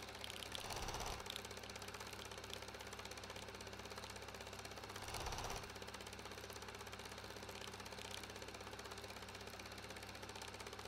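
Film projector running: a faint, steady, rapid mechanical clatter. Two brief louder swells come through, one about a second in and one just past five seconds.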